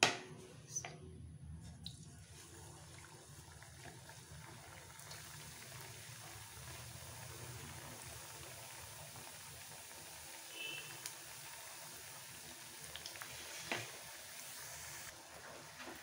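Yeast-dough donuts deep-frying in hot oil in a steel pan: a faint, steady sizzle and bubbling. A few light knocks come through, the sharpest at the very start.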